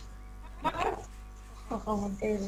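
A person's short spoken interjection, "hein," over a steady low electrical hum, with speech resuming near the end.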